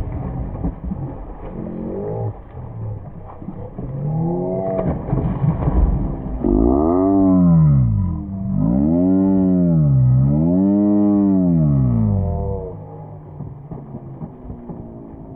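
Slowed-down audio of a mule braying: a deep, drawn-out call whose pitch rises and falls in long arches, three or four times. It is loudest through the middle and ends near the end. Before it, slowed splashing of hooves wading in shallow water.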